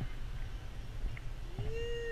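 Low rumble on the microphone, with a single drawn-out animal call near the end that rises and then falls in pitch.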